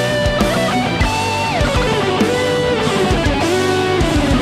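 Custom electric guitar by Anna Corona Liuteria playing a melodic lead line. The notes slide and bend, with a long downward glide about a second and a half in. The lead sits over a sustained low backing with a beat.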